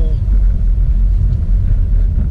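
Steady low rumble of a moving car heard from inside the cabin: road and engine noise.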